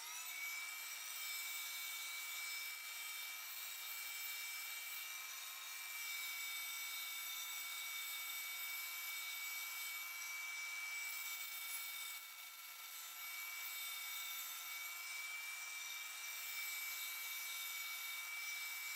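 Parkside wood lathe running with a steady electric-motor whine while sandpaper rubs against the spinning wooden workpiece with a hiss. The sanding smooths a surface that the turning tools left rough.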